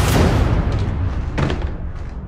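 A loud, deep trailer boom hit whose low rumble slowly fades, with a second, sharper hit about a second and a half in.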